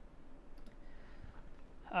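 Quiet room tone with a few faint clicks a little over half a second in, then a man starts speaking near the end.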